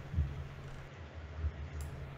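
Quiet room tone with a steady low electrical hum and a couple of faint soft bumps.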